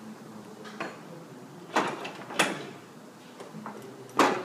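Metal clinks and knocks of a long 8 mm wrench working under the EGR cooler of a 6.0 Powerstroke diesel: two sharp clacks near the middle, about two-thirds of a second apart, with a few lighter ticks around them.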